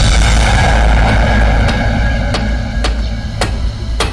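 A loud, deep rumble from a war film's soundtrack, with about five sharp cracks or knocks over it in the second half; the rumble eases off slightly toward the end.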